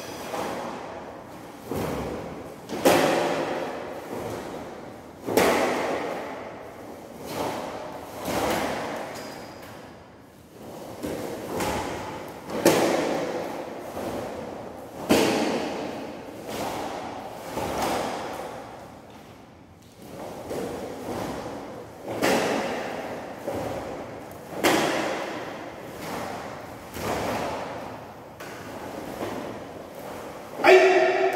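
A barefoot karateka performing a sai kata: sharp swishes and snaps of the gi and sai with each strike, and thuds on a tile floor, coming about once a second at an uneven pace. Each one rings on briefly in the large, bare room.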